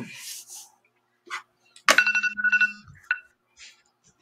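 Electronic timer alarm going off about two seconds in, a steady chime of about a second with a short second chirp just after: the 30-second bidding countdown running out.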